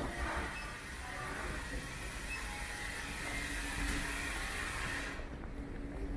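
A steady, loud hiss over the low hum of a large hall, cutting off suddenly about five seconds in.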